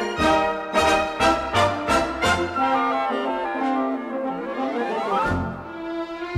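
Light-opera theatre orchestra with prominent brass playing an instrumental passage: a string of sharply accented chords about twice a second, then a rising run of notes up the scale.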